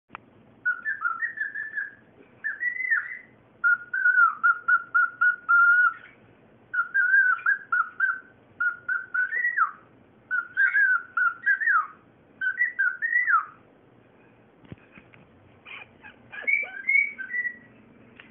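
Cockatiel whistling its song in short phrases of quick rising and falling notes, some runs of the same note repeated rapidly, with brief pauses between phrases. It whistles into a little bowl, which gives the whistles an echo.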